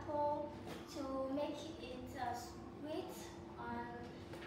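Speech only: a girl talking, her words not made out.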